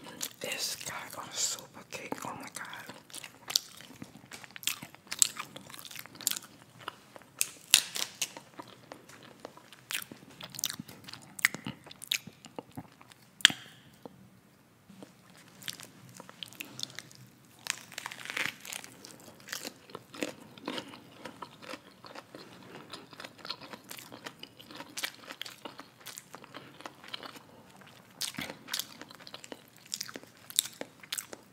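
Close-miked eating sounds: crunchy bites and chewing of a fried chicken sandwich and fries, full of irregular sharp crackles and wet mouth clicks, with a short pause about halfway through.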